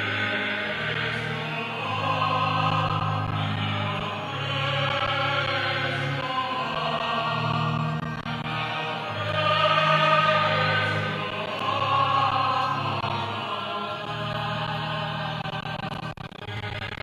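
A choir singing a slow sacred hymn over long, held low notes, in phrases that swell and fade every few seconds.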